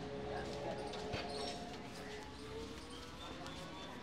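Hands pressing and working a man's shoulder during a barber's massage, with one dull thump about a second in, over background voices and street ambience.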